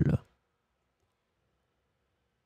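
A voice finishing the last French word of a sentence, cutting off a quarter second in, then near silence.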